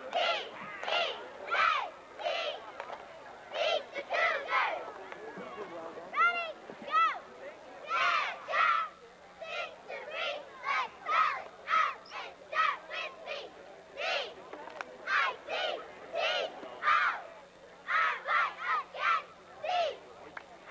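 Young cheerleaders shouting a cheer together: a steady run of short, high-pitched shouted words, about one or two a second.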